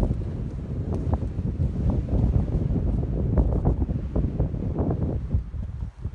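Wind buffeting the camera's microphone: a gusty low rumble that rises and falls.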